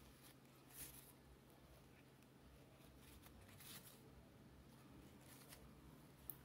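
Near silence, with a few faint, brief rustles of ribbon and thread being handled as a stitch is sewn into a fabric bow.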